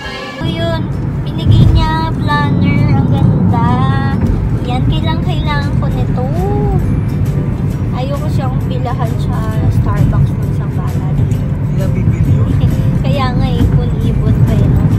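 Steady low road rumble inside a moving car, under a song with a sung vocal.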